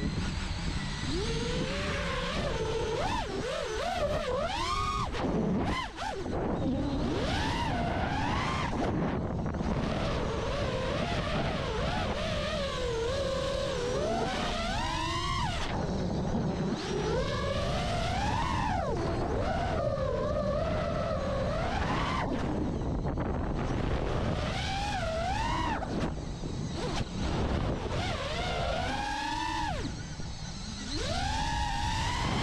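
Five-inch FPV freestyle quadcopter (iFlight Nazgul 5) in flight. Its brushless motors and propellers whine, sweeping up and down in pitch as the throttle is worked, over a rush of wind on the onboard camera.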